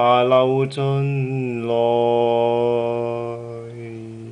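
Unaccompanied male voice singing the closing phrase of a slow ballad, settling into one long held low note that slowly fades away near the end.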